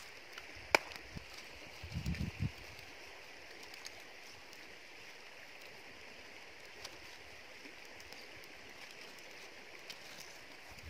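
Faint steady rush of a nearby stream. Just under a second in there is a sharp click, and around two seconds a few soft low thumps, as sticks are handled and laid on a small wood fire.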